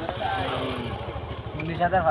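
A motorcycle engine idling with a steady, rapid low pulse, under nearby people's voices.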